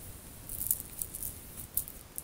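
Oracle cards being handled: a few light, high-pitched rustles and soft clicks.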